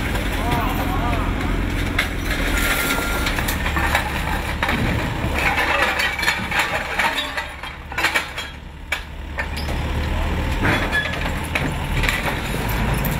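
Caterpillar 428F backhoe loader's diesel engine running under load, with scattered knocks and cracking of debris as the bucket dumps rubble into a truck and shoves against a kiosk. The engine eases off for a couple of seconds about two-thirds of the way through. Voices are heard in the background.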